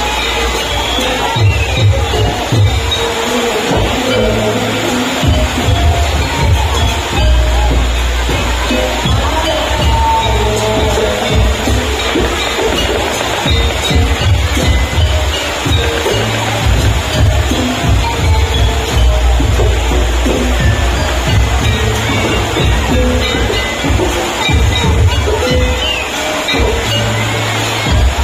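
Loud jaranan gamelan-style music accompanying a Barong dance, played through loudspeakers: a melody in the middle range runs over repeated heavy low drum and gong beats.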